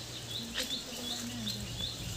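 A small bird chirping: short high rising chirps repeated about three times a second over a steady low hum, with a few light clicks as leaves brush past.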